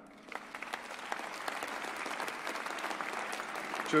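Large audience applauding, the clapping starting just after the start and building steadily.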